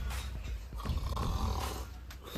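A man snoring, with one drawn-out snore about a second in, over a steady low rumble.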